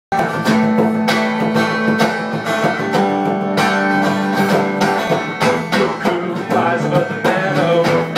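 Small acoustic band playing live, with steadily strummed and picked acoustic guitars. The music cuts in abruptly at the very start.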